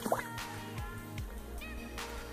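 Background music: held electronic tones over a steady low bass, with short gliding notes.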